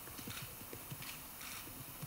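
Faint room tone with a scatter of soft, irregular low clicks.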